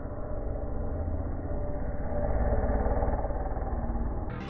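Dirt bike engine running as the bike rides toward the ramp, rising in pitch and loudness from about halfway through as it accelerates.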